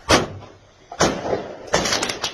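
Fireworks going off: a sharp bang at the start and another about a second in, each dying away, then a louder, denser burst near the end.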